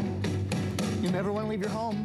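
A song playing through a Bose Wave Music System IV: guitar over a steady beat, with a singer's wavering voice coming in about a second in.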